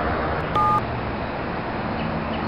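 A single short two-note keypad beep from a mobile phone as a key is pressed, about half a second in, over a steady background hiss.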